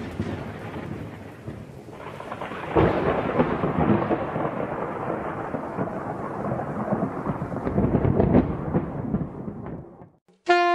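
A thunder-and-rain sound effect. A rumbling, crackling roll dies down from a crash just before this, swells again about three seconds in, rolls on and fades out near the end.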